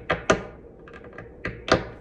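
A series of light, sharp knocks and clicks, about six in two seconds, with two louder ones about a third of a second in and near the end.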